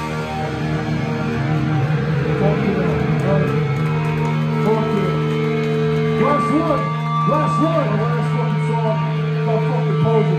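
Live punk rock band: electric guitars and bass ringing on held chords, with a man singing into the microphone over them from a couple of seconds in.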